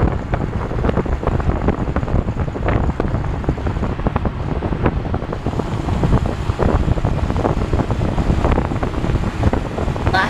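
Wind buffeting the microphone at the open window of a vehicle moving at speed, gusting unevenly over the noise of the road.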